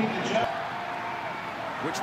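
Steady field ambience of a televised college football game as the offence sets at the line before the snap, with a thin held tone for about a second in the middle.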